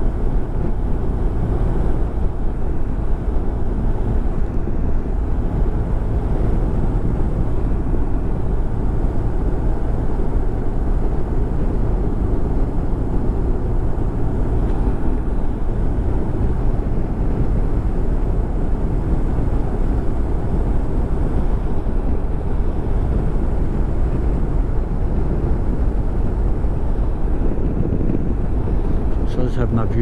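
Motorcycle cruising at a steady speed on an open road: engine running evenly under a loud, steady rush of wind on a helmet-mounted microphone.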